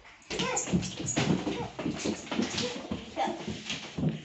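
Young children imitating puppies, making dog-like noises as they scramble after a ball, mixed with excited chatter.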